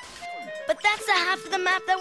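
Animated-show soundtrack: background music, a short sound effect with falling tones at the start, then a voice speaking.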